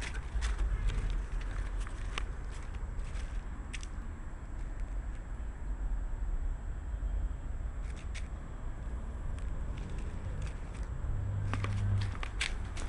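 Scattered clicks and light footsteps from a camera carried while walking, over a steady low rumble.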